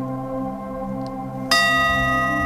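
A held musical chord rings on after the singing stops. About one and a half seconds in, a bell-like chime is struck and rings on with bright, sustained overtones.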